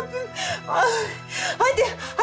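A woman crying out "Allah Allah" in a gasping, tearful voice, with sharp breaths between the words, over background music.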